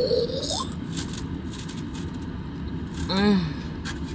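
Steady low rush of a car's heater blowing on full, with faint crunches of a taco being chewed. A pleased rising 'mm' opens it, and about three seconds in comes a falling 'oh my'.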